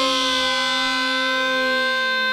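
A single steady held tone with many overtones, an edited or synthesized drone on one unchanging pitch.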